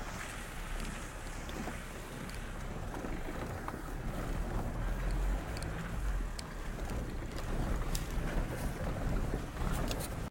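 Wind buffeting the camera microphone, a steady low rumble with a hiss above it and a few faint clicks.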